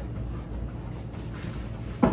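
Faint rustling and handling noise of a hand feeling around inside a cardboard box, over a low steady rumble.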